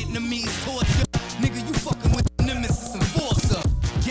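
Hip hop track playing: rapping over a beat, broken by two brief silent gaps, about a second in and a little past two seconds.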